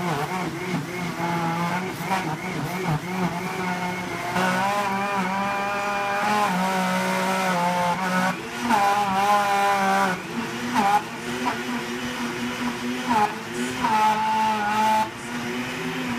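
Countertop blender running, blending chopped wheatgrass with water into a green juice; its motor whine wavers up and down in pitch as the load shifts.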